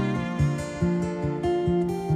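Music: fingerpicked acoustic guitar playing a steady picking pattern, with bowed strings underneath.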